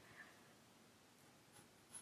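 Near silence, with faint pencil strokes on drawing paper.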